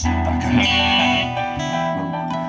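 Live band playing an instrumental passage: strummed acoustic guitar chords with electric lead guitar and keyboard, the chord changing near the end.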